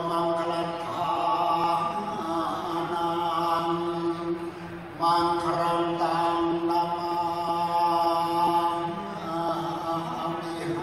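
A man chanting a ceremonial prayer into a microphone, in long held phrases on a steady pitch; a new, louder phrase begins about halfway through.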